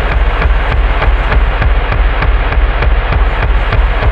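Loud, harsh experimental rock music: rapid, evenly spaced hits, about six a second, over a heavy low drone and a wash of noise.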